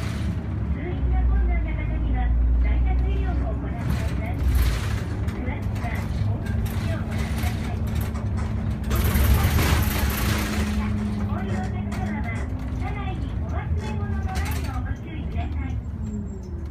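Inside a moving city bus with automatic transmission: the engine and drivetrain running with a low rumble and a steady hum that holds from about six to twelve seconds, over cabin rattles. A burst of hiss comes about nine seconds in and lasts about two seconds.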